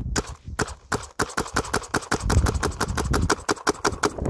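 DLX Luxe TM40 paintball marker with a mechanical trigger frame, running on compressed air, firing a rapid string of shots: a sharp pop with each trigger pull, several a second, with a short gap about a second in.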